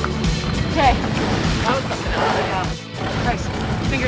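Indistinct voices over background music and a steady hiss of wind and sea on a sailboat's deck.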